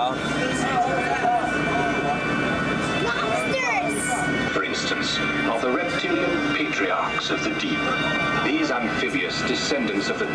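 Indistinct voices over steady background music with held tones, heard inside a submarine ride's passenger cabin.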